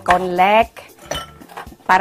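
A few light clinks of glass drinking glasses being set down on a kitchen counter, heard in a short gap between a woman's words.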